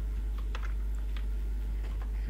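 Computer keyboard keys clicked a few times, scattered short taps while editing a spreadsheet cell, over a steady low hum.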